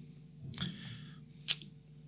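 A soft breath drawn in at the microphone, then one sharp mouth click about a second and a half in, over a faint steady hum.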